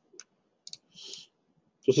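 Computer mouse buttons clicking: a few single sharp clicks spaced apart, with a brief soft rustle about a second in.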